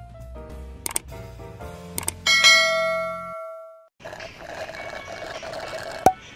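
Light intro music under a subscribe-button sound effect: two mouse clicks, then a bright bell ding that rings out for about a second before everything cuts off abruptly. After a brief gap, about two seconds of faint noise.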